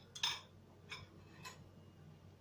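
Three short, light clicks about half a second apart, the first the loudest, from kitchen utensils being handled while baking powder is added to a basin of flour.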